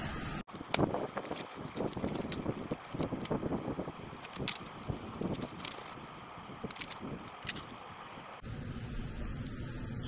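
Scattered light metallic clinks and knocks of a folding steel fire-pit barbecue and its wire grill grate being handled and set up.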